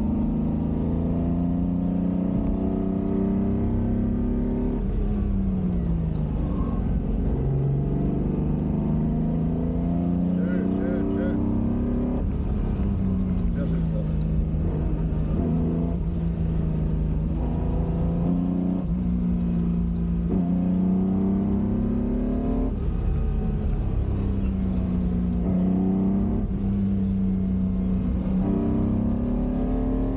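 Ferrari 250 GT Drogo's V12 engine heard from inside the cabin under hard driving. Its pitch climbs and falls sharply again and again as it works through gear changes and corners.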